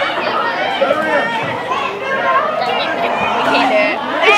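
Indistinct chatter of several young people talking at once, voices overlapping.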